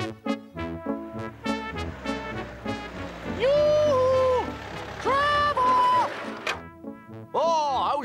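Brass-led cartoon background music, with two loud honks from a bus horn about three and five seconds in. Each honk drops slightly in pitch partway through.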